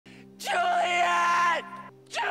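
A man's drawn-out anguished scream of grief, held at one pitch for about a second and dropping away at the end. It plays over a low steady drone from the film's score.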